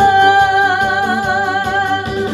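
A singer holding one long note with a gentle vibrato over instrumental backing, the end of a sung line in a Korean song's guide vocal.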